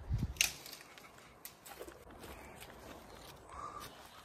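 Footsteps on dry forest litter and twigs, with a soft thud at the start and then scattered sharp snaps and crackles about a second apart.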